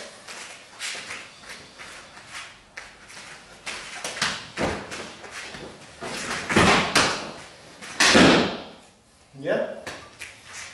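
Hand-to-body strikes, a kick and bare footwork on a mat during a silat partner drill: a string of slaps, thuds and rustles, the loudest bursts coming in a cluster about two-thirds of the way in as the partner is taken down.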